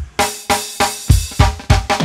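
A drum kit plays a beat in a song's intro, with bass drum and snare struck about three or four times a second.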